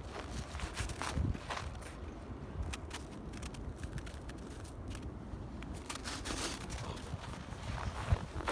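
Footsteps crunching in snow, irregular and uneven. They thin out in the middle as the walk pauses, then pick up again near the end.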